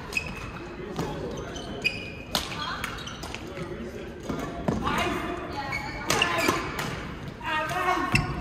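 Badminton rally: sharp racket hits on the shuttlecock, several in a row about a second apart, echoing in a large gym hall, with voices in the background.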